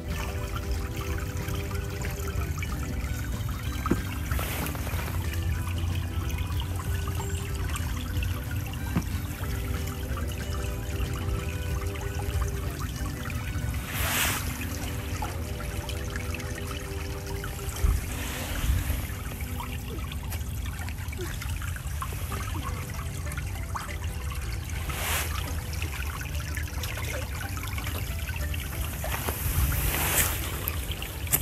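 Shallow stream trickling over a pebble bed, with a low rumble underneath and a few brief rushes of noise.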